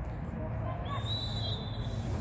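A referee's whistle blown once, a single steady high note about a second long, starting about a second in.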